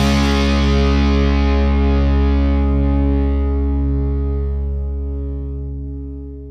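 The final chord of a punk rock song on distorted electric guitars and bass, held and ringing out. The high notes die away first, and the whole chord slowly fades over the last couple of seconds.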